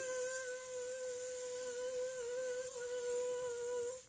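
A woman's voice imitating a bee: one long "bzzz", a hum at a steady pitch with a hiss through the teeth, held for nearly four seconds.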